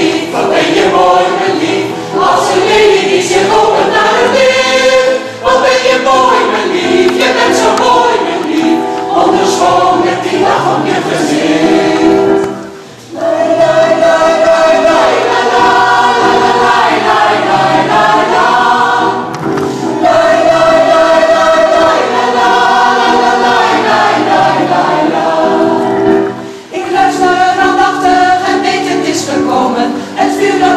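Mixed choir of men and women singing in harmony, in phrases with short breaths between them. The longest break comes about 13 seconds in.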